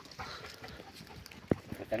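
Faint scuffing of footsteps on dry earth, with one sharp click about one and a half seconds in.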